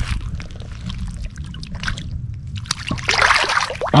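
Largemouth bass let go by hand into shallow water, with a splash and slosh of water near the end, over a steady low rumble.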